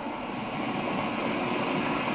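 Steady hiss-like background noise of an old film soundtrack, heard through a television's speaker.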